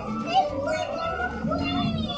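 Indistinct voices of adults and children talking in a busy shop.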